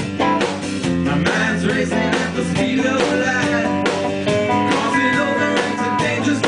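A live rock band playing a song, with electric and acoustic guitars over a drum kit.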